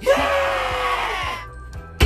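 A loud scream-like cry lasting about a second and a half, falling slightly in pitch, over background music.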